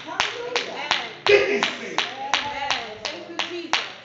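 Steady rhythmic hand clapping in praise worship, about three claps a second, with a voice calling out over it.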